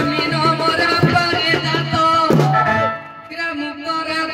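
Live amplified folk music: regular drum strokes under steady held melodic tones, with a voice singing through a microphone. The music drops away briefly about three seconds in.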